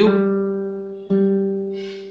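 Guitar strings plucked twice, about a second apart, each note ringing and fading away. The guitar is being tuned because its strings have gone sharp.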